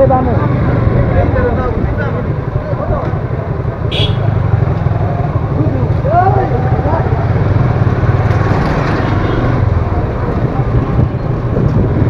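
Motorcycle engine running steadily at low speed, heard from the rider's on-board camera, with faint voices in the background and a short high-pitched sound about four seconds in.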